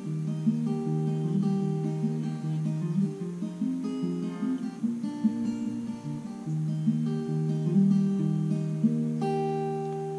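Acoustic guitar fingerpicked, playing a chord progression as a repeating pattern of single plucked notes that ring into one another, with a chord struck near the end and left ringing.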